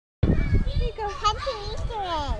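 A toddler's high voice vocalising without clear words, wavering up and down in pitch, over a low rumble in the first half second.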